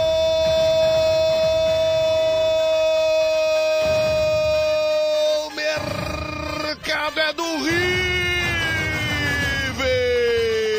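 Brazilian football commentator's drawn-out goal shout, "Gooool!", held on one note for about five seconds, then further long held shouts that slowly fall in pitch, over stadium crowd noise.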